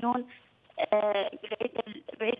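A woman talking over a telephone line, her voice thin and narrow-sounding, with a short pause early on before she goes on speaking.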